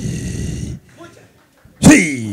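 A woman's rough, growl-like vocal cries: a short gravelly growl at the start, a brief pause, then a sudden loud cry near the end that falls sharply in pitch.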